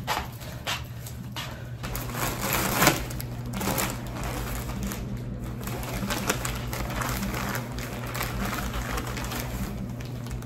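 Plastic poly mailer bag crinkling and tearing as it is opened by hand: a dense, irregular crackle, sharpest just before three seconds in. A steady low hum sits underneath.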